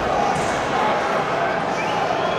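Football crowd in the stadium stands: many supporters' voices at once in a steady din.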